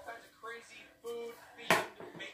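Faint voice from the video playing on the projector, then a single sharp knock near the end.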